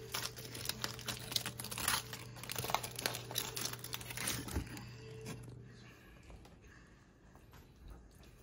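Aluminium foil burger wrapper crinkling and crackling as it is peeled open by hand, dense for the first five seconds or so, then dying down.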